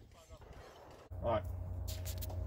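A man's voice saying "all right". It comes after about a second of near quiet, over a steady low hum that starts suddenly about a second in.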